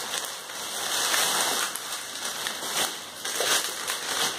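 Plastic bags crinkling and rustling irregularly as they are handled and opened by hand.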